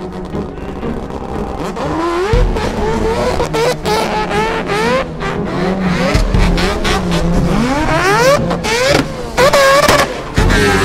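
Race car engine revving hard through the gears, its pitch climbing and dropping back again and again, with sharp cracks between the climbs.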